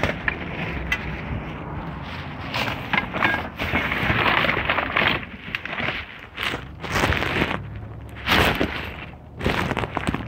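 Hands rummaging through a pile of junk: plastic crinkling and rustling, with items knocking and clattering together in uneven bursts.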